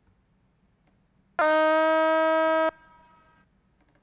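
A single sung lead-vocal note, pitch-corrected in Melodyne, played back on its own: it starts and stops abruptly, lasts just over a second at a perfectly steady pitch, and leaves a faint, quieter tail.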